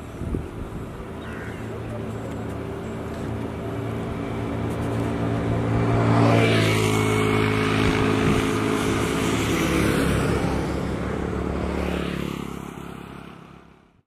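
Motorbike engines running with a steady hum, swelling to their loudest about six seconds in as a vehicle passes close, then fading out at the very end.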